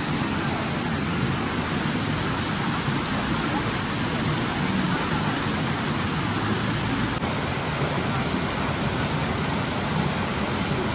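Mountain stream rushing over rocks and small cascades, a steady, even rush of water.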